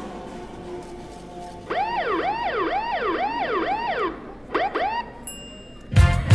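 Police siren sound effect in the dance music mix: a fast wail rising and falling about twice a second for a couple of seconds, then two short whoops, after the previous music fades out; loud music with a heavy beat starts right at the end.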